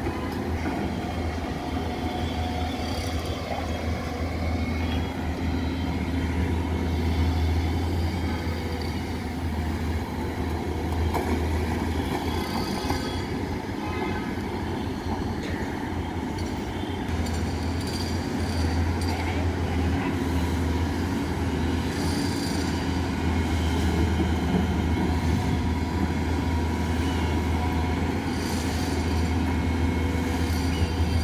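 Caterpillar tracked hydraulic excavator working in wet mud, its diesel engine running with a steady deep drone. A few faint knocks come through now and then.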